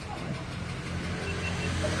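Steady low rumble of a motor vehicle engine running. A voice starts near the end.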